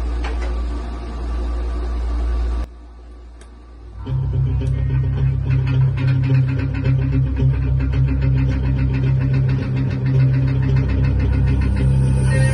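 Electric guitar played through an amplifier. There is a steady low amp hum at first, which drops away briefly at about three seconds, then a loud, low riff with steady picked strokes from about four seconds in.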